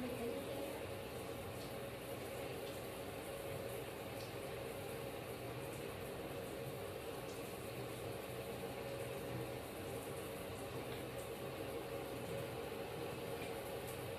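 Water running steadily into a bathtub, an even rushing sound, with a faint steady hum underneath.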